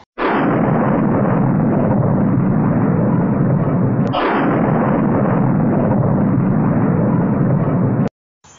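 Two explosion sound effects, each a sudden blast followed by a long, loud rumble. The second blast comes about four seconds in, and the rumble cuts off abruptly at the end.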